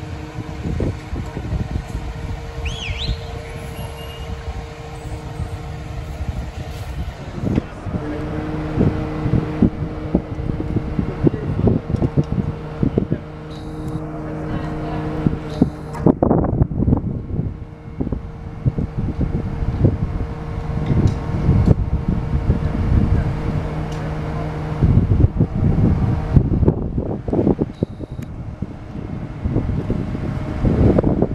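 Fire truck's diesel engine running steadily, a droning hum with a second tone joining about eight seconds in, as it powers the raised aerial ladder. Irregular gusts of wind buffet the microphone throughout.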